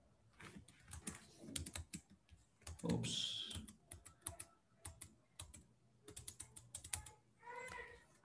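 Faint typing on a computer keyboard, irregular key clicks throughout, with a louder brief sound about three seconds in and a short voice-like sound near the end.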